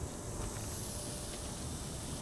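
Lawn sprinklers spraying water over grass and pavement: a steady hiss.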